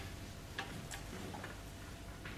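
A few light ticks and taps of writing on a board as a diagram is drawn and labelled, over a steady low room hum.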